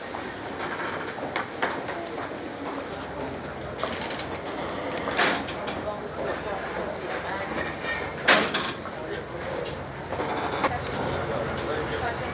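Bustle of a crowd on the move: indistinct voices over a steady clatter of footsteps and rattling, with a few sharp knocks, the loudest about five seconds and about eight seconds in.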